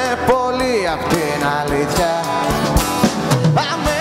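Live band music: a man singing a melody over acoustic guitars, with a steady drum beat.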